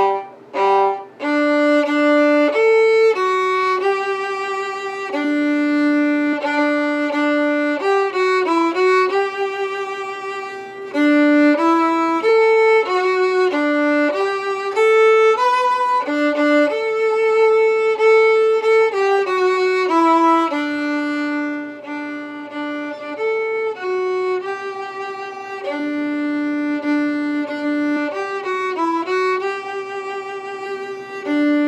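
Unaccompanied violin playing the first-violin part of a march, one melodic line: a few short separate notes at the start, then mostly longer held notes moving step by step.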